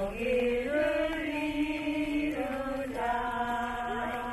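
Voices chanting or singing in unison, a slow melody of long held notes that step to a new pitch every second or so.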